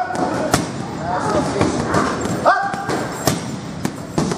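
Gloved punches landing on a leather heavy bag, a series of sharp thuds, mixed with a few short high-pitched sounds, one near the start and one about two and a half seconds in.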